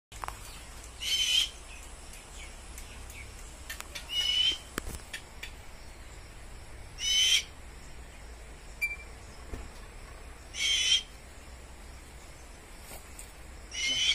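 A fish owl giving five short, high-pitched screeching calls, each under half a second, spaced about three seconds apart.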